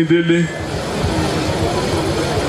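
A man's voice amplified through a microphone and loudspeakers, drawing out one syllable at the start. It then pauses over a steady background noise.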